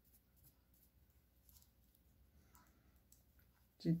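Faint, scattered light clicks and rustles of knitting needles working knit stitches in yarn, over a low room hum.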